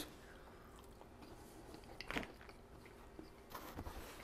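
Faint chewing on a bite of grilled country-style pork rib, with a few soft clicks about two seconds in and again near the end.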